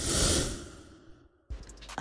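A whoosh transition sound effect: a breathy rush of noise that swells, peaks a moment in and fades away within about a second.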